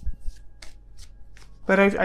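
Deck of tarot cards being shuffled by hand: a handful of brief, soft card swishes in a pause between words.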